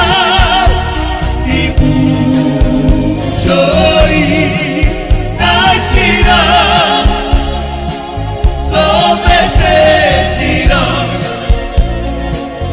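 Romani song: a sung vocal line in phrases of a few seconds with wavering vibrato, over a full band with a steady, quick percussive beat.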